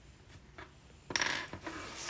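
Faint drawing sounds: a pencil tip lightly scratching paper, then a short rasping rub about a second in.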